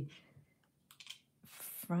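Faint small clicks and a short rustle of 18-gauge craft wire being handled and bent by hand, the wire ends ticking against each other and brushing the paper template.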